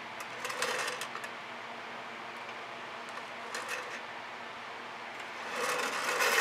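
Faint steady room hum with a few short handling noises from painting tools, about half a second in and again around three and a half seconds. Near the end, the canvas board scrapes on the tabletop as it is turned.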